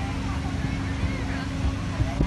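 Steady hum of a bouncy castle's electric blower fan, with soft low thuds and faint distant children's voices.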